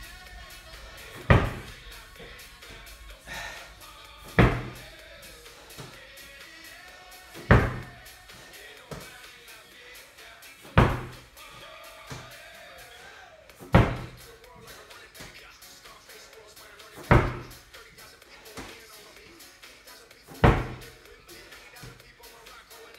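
Slam ball thrown down hard onto a rubber gym mat, seven heavy thuds about three seconds apart, with background music.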